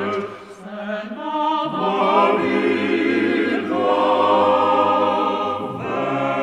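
Male-voice octet singing a cappella in close harmony: held chords with deep bass voices underneath, broken by a short pause between phrases about half a second in and again near the end.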